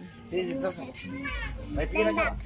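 Indistinct talking, children's voices among it, with a low rumble coming in about two-thirds of the way through.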